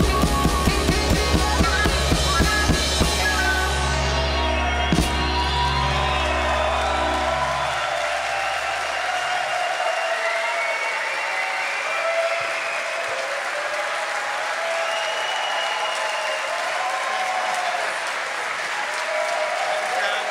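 A live band with drum kit and keyboards ends a song: a steady drum beat for the first few seconds, a last hit about five seconds in, and a low keyboard bass note dying away. From about eight seconds in, the audience applauds and cheers.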